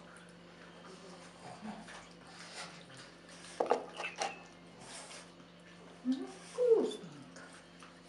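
Pug puppy licking and smacking at food offered on fingers and a spoon, with a few short sharp sounds about halfway through.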